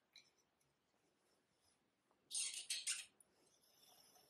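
Wool yarn being pulled and handled at a spinning wheel's flyer, making a brief scratchy rustle about two seconds in; otherwise near silence.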